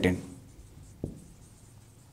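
Marker pen writing on a whiteboard, faint, with one light tap about a second in.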